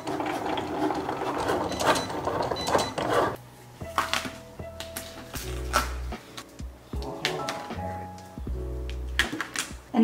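Cricut Explore 3 cutting machine running as it cuts iron-on vinyl, its carriage and blade moving in quick stop-and-go strokes for about the first three seconds, over background music. After that only the music is heard, with steady notes and a stepping bass line.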